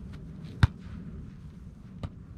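One sharp smack of a volleyball being struck by a player's hands, about two-thirds of a second in, over faint steady background noise.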